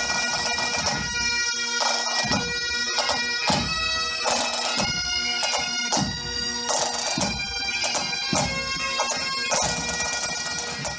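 Pipe band playing: Great Highland bagpipes sounding a melody over their steady drones, with snare, tenor and bass drums keeping a steady beat.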